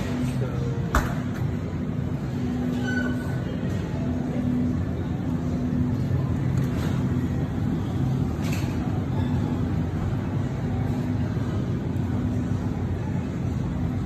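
Wire shopping cart rolling over a tiled store floor, its wheels giving a steady low rumble, with one sharp knock about a second in.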